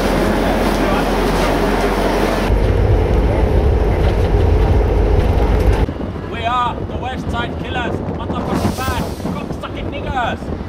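A busy, echoing station-entrance hubbub, then a few seconds of heavy wind rumbling on the microphone. From about six seconds in, a man's voice calls out in short phrases.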